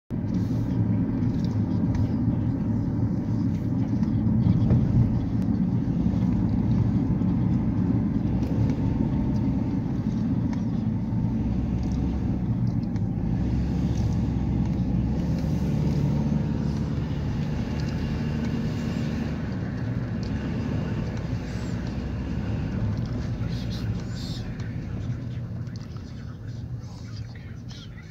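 Car driving on a paved road, heard from inside the cabin: a steady low rumble of tyres and engine that eases off over the last few seconds as the car slows.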